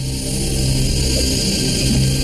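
Tense cartoon background score: a steady low drone with a hissing wash over it.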